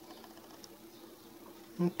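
Quiet room tone with a faint, steady low hum; a man's voice starts just before the end.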